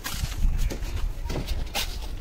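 Steel mason's trowel scraping and slapping wet cement-sand mortar along a bed for a brick course: a few short, sharp scrapes about half a second apart over a low rumble.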